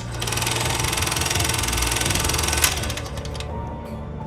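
Film-projector sound effect: a fast, even mechanical clatter that starts with a click and cuts off with another click about two and a half seconds in, over a low droning music bed.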